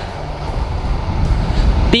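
Low, steady rumble of wind and engine noise from a Yamaha Sniper 150 underbone motorcycle being ridden along a street.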